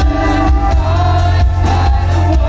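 Live rock band playing loudly through a concert PA: heavy pulsing bass and drums with singing, a wavering sung line coming in about a second in.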